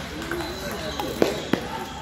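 Celluloid-type table tennis ball being hit and bouncing: a few sharp clicks just after a second in, the loudest two about a third of a second apart, as the point ends. Under them runs the murmur of voices in a busy playing hall.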